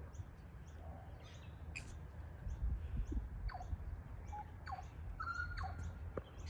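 A butcherbird singing a few clear, fluted whistled notes with quick pitch slides in the second half, over faint high chirping that repeats steadily.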